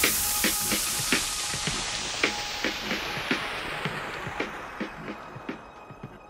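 Background music's closing tail: a hissing wash that fades away steadily, with light clicks scattered through it.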